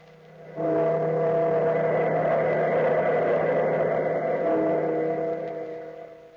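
Sustained musical chord, a transition sting between the episode title and the first scene. It swells in just over half a second in, holds steady over a rushing texture, and fades out near the end.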